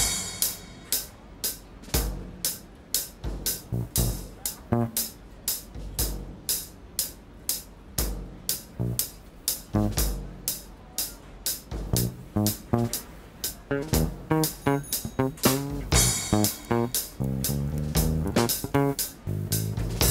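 Drum kit keeping a steady beat with cymbal and drum strokes on a street. An electric bass guitar joins with short low notes about halfway through, growing busier into a continuous bass line near the end.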